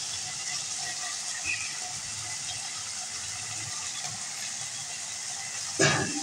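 Potatoes and peas in masala sizzling steadily in oil in a steel pan; the masala has begun to release its oil, the sign that the dry sabzi is cooked. A sudden knock right at the end.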